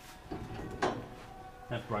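A single sharp metal knock about a second in, with a short ring, as a seized air brake cylinder on an AEC Regal Mark III bus chassis is knocked loose with a makeshift striker in place of a hammer.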